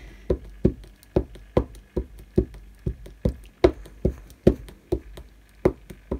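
A StazOn ink pad patted repeatedly onto a wood-mounted rubber stamp to ink it: a steady run of short knocks, about two and a half a second.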